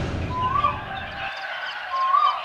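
Outdoor street ambience with a bird giving a short whistled call that rises and falls, twice, about a second and a half apart, as a low background rumble fades out.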